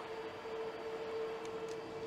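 Steady background hum of machinery in a large industrial hall: an even hiss with one constant mid-pitched tone running beneath it.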